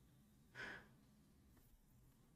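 A man's short, soft breathy exhale through the nose, a quiet chuckle, about half a second in; otherwise near silence.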